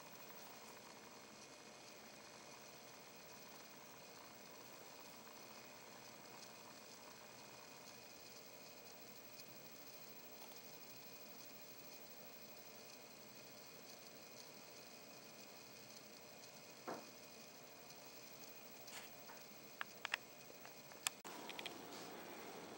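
Near silence: steady faint room tone and hiss, with a short tap and then a few sharp clicks in the last few seconds.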